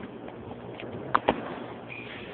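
Two sharp clicks in quick succession about a second in, from fingers handling the phone close to its microphone, over a steady low background din.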